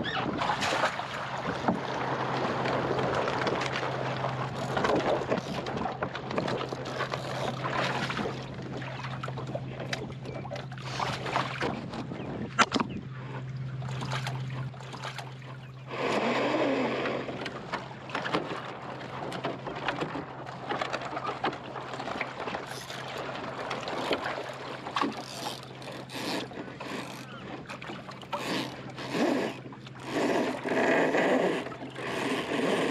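Water splashing and lapping against the hull of a small plywood sailing skiff, with wind on the microphone and scattered knocks and clicks from gear aboard.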